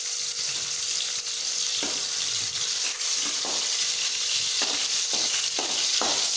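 Oil sizzling steadily in an aluminium kadai with green chillies frying in it. A few short scrapes and knocks of a metal ladle stirring in the pan come in the second half.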